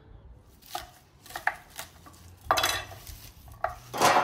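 Kitchen knife cutting celery on a wooden cutting board: a handful of separate crisp cuts, with a longer, louder stroke about two and a half seconds in.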